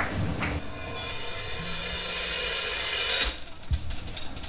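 Rock drummer's cymbal roll swelling steadily louder for about two and a half seconds, then cut off, with faint held guitar tones underneath. A single low drum hit comes near the end, as the band counts into the next song.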